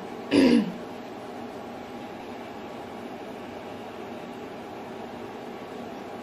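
A woman's brief wordless vocal sound with a falling pitch about half a second in, then steady room hiss with a faint hum.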